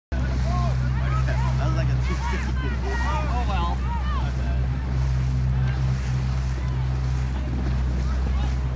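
Motorboat engine running with a steady low drone, under wind on the microphone and water rushing past the hull. Through the first four seconds or so, many short distant shouts rise and fall over it.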